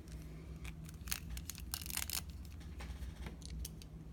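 Plastic action figure being handled and set down on a wooden table: a series of small sharp clicks, with a brief patch of rubbing noise about halfway through.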